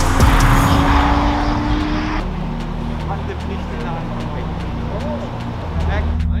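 A BMW Z4 roadster's engine pulling along a race track, its pitch rising, cut off abruptly about two seconds in. After that comes faint talk, with background music running throughout.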